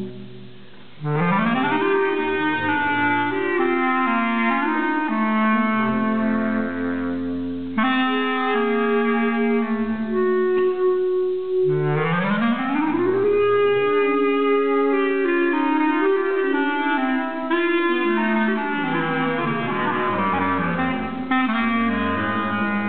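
A bass clarinet and a soprano clarinet playing together, holding long overlapping notes. After a brief lull at the start, a low note glides slowly upward about a second in, and again about halfway through.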